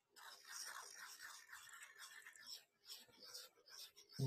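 Faint, uneven scraping of a graphite lead being ground as a mechanical lead holder is turned inside a handheld rotary lead pointer.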